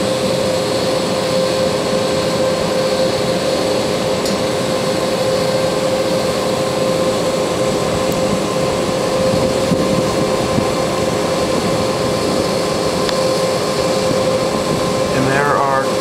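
Rooftop HVAC equipment running, a steady mechanical hum with a constant mid-pitched tone over fan and air noise, unchanging throughout.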